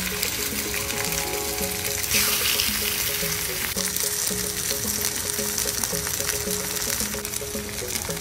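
Fish fillets sizzling in hot olive oil with onions and garlic in a cast-iron skillet, the sizzle swelling for a moment about two seconds in. Background music with a repeating melodic pattern plays over it.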